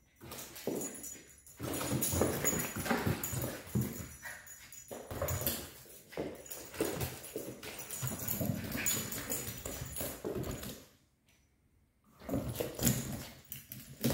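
A Cairn Terrier's claws clicking and scrabbling on a hardwood floor as it runs after a ball, in quick irregular runs with short pauses. It goes quiet for about a second near the end.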